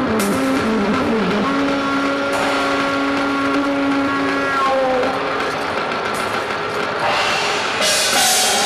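Live trumpet playing a stepwise falling phrase, then holding one long low note, over a dense electronic backdrop. Near the end a cymbal swell rises.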